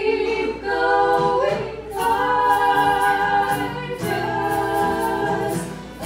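Women singing a song live in close vocal harmony, the held notes changing about every two seconds, with light acoustic guitar and keyboard accompaniment under the voices.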